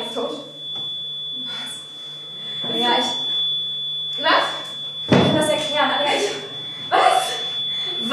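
Two girls speaking stage dialogue in short phrases, with a steady high-pitched whine and a low hum beneath.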